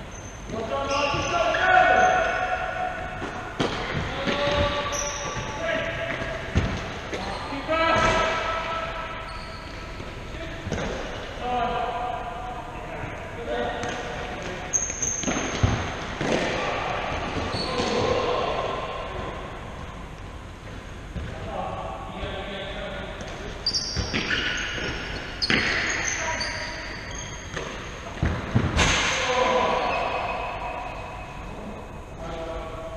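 Indoor five-a-side football on a wooden sports-hall floor: the ball being kicked and thudding off the floor and boards again and again, with players shouting to each other, all echoing around the hall.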